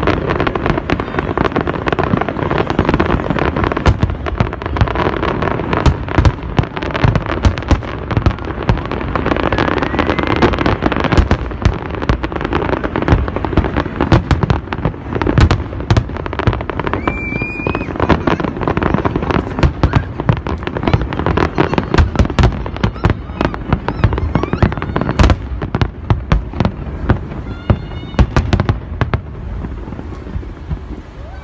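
Aerial fireworks display: a dense, rapid barrage of shell bursts and crackling bangs, thinning out near the end. A brief high whistle cuts through in the middle.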